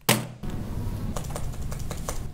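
A short burst of noise right at the start, then computer keyboard keys clicking in quick irregular strokes as a name is typed into a search box, over a low room hum.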